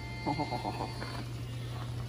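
A quick run of about six short pitched calls in under a second, heard over a steady low hum.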